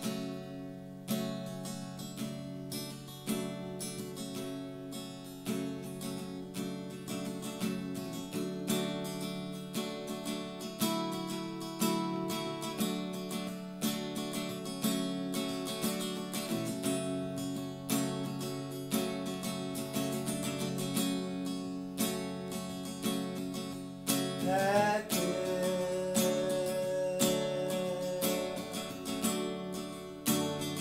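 Acoustic guitar strummed steadily through chords in a slow, regular rhythm.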